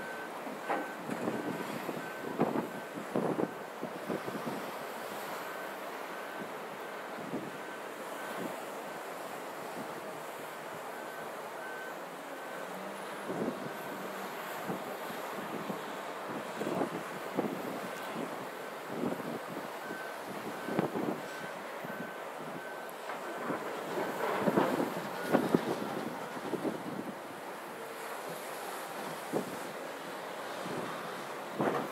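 Reversing alarm on beach construction machinery, beeping at one steady pitch about once a second and stopping near the end, heard over wind buffeting the microphone.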